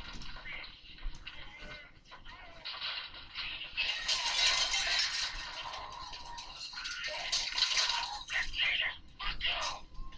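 Indistinct background voices, with a stretch of dense hiss-like noise from about four to eight seconds in.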